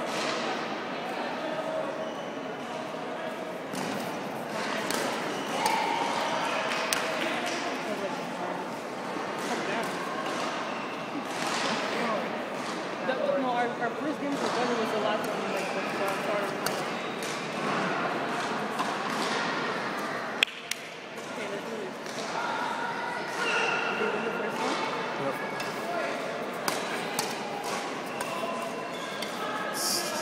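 Indistinct voices carrying through a large gym hall, with sharp clicks of badminton rackets striking the shuttlecock every now and then during a doubles rally.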